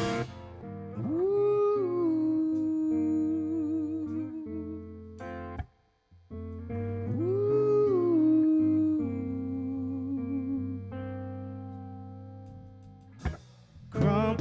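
Quiet passage of a live rock band: a single string-instrument melody slides up into a held note with vibrato, played twice, over low sustained bass notes. The full band comes back in at the very end.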